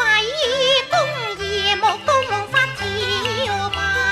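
A woman singing a Cantonese opera aria in a high voice with wide vibrato, over instrumental accompaniment.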